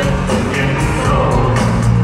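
Live synth-pop band playing amplified through an arena sound system, with synthesizers, a steady beat and a male lead vocal, recorded from the audience.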